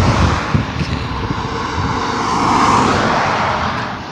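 Road traffic passing: the tyre and engine noise of a car on the road swells to a peak about two-thirds of the way through, then fades.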